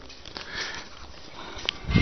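Faint hiss of a recorded phone line with no one speaking, with one brief click about three-quarters of the way through.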